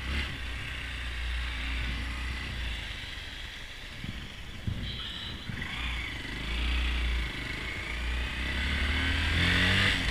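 Honda Grom's 125 cc single-cylinder engine running as the bike is ridden, under a steady low rumble. Over the last few seconds its pitch rises as it accelerates.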